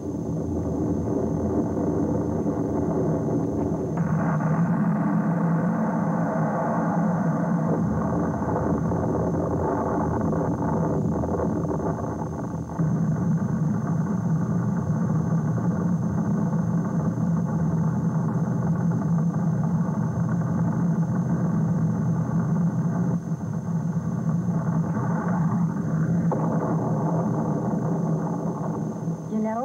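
Rocket engine and explosion noise on an old film soundtrack, continuous and loud, changing abruptly about 4 and 13 seconds in as the footage cuts between failed launches.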